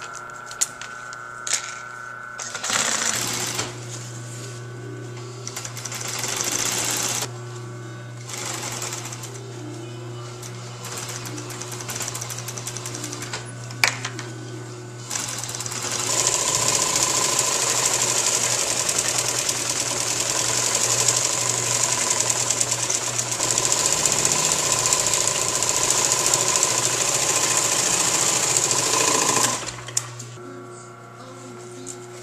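A steady low hum, then about sixteen seconds in a louder, fast, even mechanical rattle that runs until it stops abruptly just before the end.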